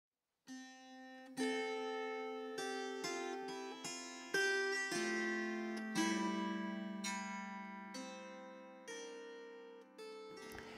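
Table harp (a zither-like frame harp played from a note sheet slid under its strings) plucked in a slow melody. The single notes come about once a second and ring on over one another. The playing begins about half a second in.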